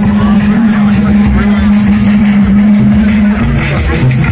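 Live electronic music from a Eurorack modular synthesizer: a loud, held low synth note with low thumps beneath it. The held note drops out about three and a half seconds in.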